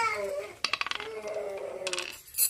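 A die thrown onto a wooden Ludo board, clattering in a quick run of clicks about half a second in, with a couple more clicks near the end. A voice trails off at the start.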